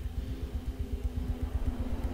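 A low, steady rumbling drone with a faint sustained hum from the TV episode's soundtrack, the dark underscore of a tense scene.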